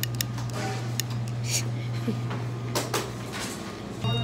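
Metal serving tongs clicking a few times at the start, then light clatters of handling, over a steady low hum.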